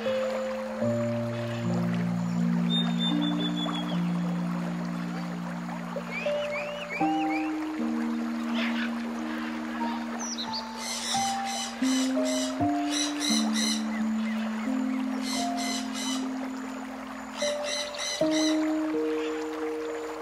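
Slow, soft background music of held notes that change every second or two, with bird chirps layered in a few times and a fast, pulsing high chirring joining near the middle and continuing to about eighteen seconds in.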